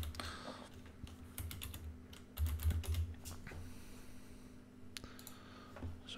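Computer keyboard being typed on in short bursts: a few keystrokes at the start, more about one and a half seconds in, a longer run around two and a half to three and a half seconds in, and a single click near the end. The busier stretches carry dull low thuds.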